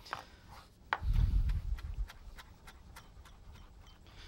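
Chef's knife rough-chopping fresh parsley on a plastic cutting board: quick, light knocks of the blade on the board, about four a second, with a low thud about a second in.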